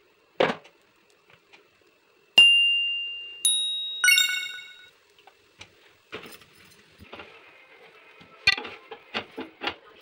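Three clear metallic rings, each a sharp strike that dies away over about a second, the last one richer, with several tones at once. They are followed by irregular light knocks and scrapes of a metal spatula on the iron tawa as the dosa is folded.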